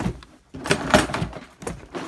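Boxes, cables and parts being shifted and knocked about while rummaging through a cluttered pile: irregular rustling and clattering, loudest about a second in.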